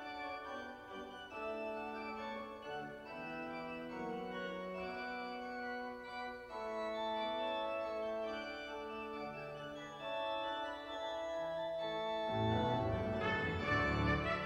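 Pipe organ playing slow, held notes and chords that change every second or so. Near the end a louder, fuller passage comes in.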